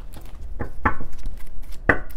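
Tarot cards being handled over a table: three short, sharp snaps and taps as a deck is gathered, squared and tapped down.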